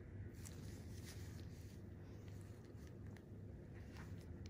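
Quiet steady low hum of room noise, with faint scattered soft ticks and rustles.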